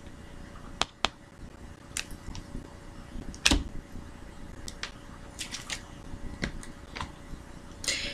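Irregular soft clicks and taps of Lenormand cards being handled and laid down on a table while the next card is drawn.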